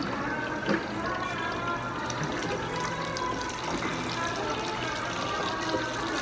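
Hot oil sizzling and crackling steadily as skewered, battered food deep-fries in a tabletop fryer, with background music and chatter.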